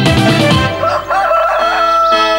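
Background music with a beat fades out, and a rooster crows with a wavering pitch about a second in, over held music notes: a dawn cue.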